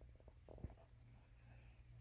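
Near silence: low steady room hum with a faint click or two from handling about halfway through.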